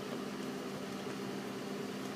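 Steady low hum of a running engine or motor, holding several even pitches with no change.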